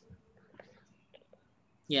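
A quiet pause with faint whispering and a few small clicks from open microphones, then a man's voice starts speaking just before the end.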